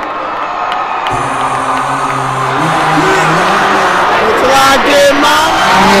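Arena concert crowd cheering, then a deep sustained bass note from the PA comes in about a second in. From about three seconds a voice over the music joins, with the crowd still cheering and the sound growing louder.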